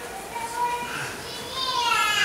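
Speech only: faint, distant voices of audience members in a hall talking over one another, with one voice coming up more clearly near the end.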